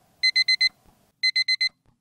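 Digital alarm beeping in quick groups of four short, high beeps, a group about once a second: a wake-up alarm going off.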